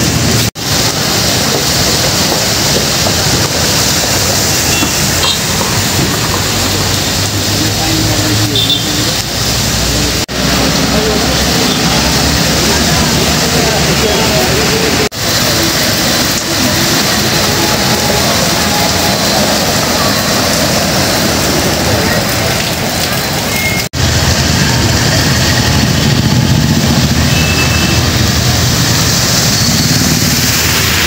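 Steady noise of traffic on a flooded, rain-soaked road: tyres hissing and splashing through standing water and vehicle engines running, broken by a few brief dropouts.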